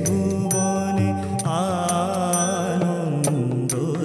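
A male voice singing an Indian song with harmonium accompaniment: held reed tones underneath and the vocal line turning into quick wavering ornaments about halfway through. Percussion strikes keep a beat throughout.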